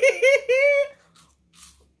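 A woman laughing in short pitched pulses, trailing off about a second in; a couple of faint short sounds follow.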